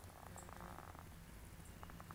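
Faint, steady low hum of a hummingbird moth's wings as it hovers at the flowers.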